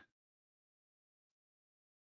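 Near silence: the sound drops out completely between sentences of speech.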